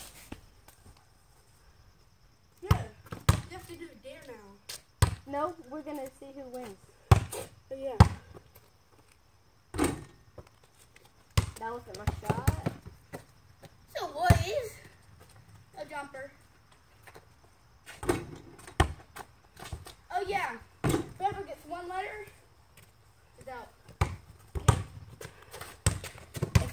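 A basketball bouncing in single, irregular thuds, about one every second or two, as shots are taken at a hoop.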